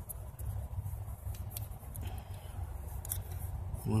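Faint small metal clicks and scraping as a Heli-Coil thread insert is wound by hand into a freshly tapped bolt hole in the cylinder head with its installing tool, repairing stripped cam-tower bolt threads. The clicks are few and irregular, over a low steady rumble.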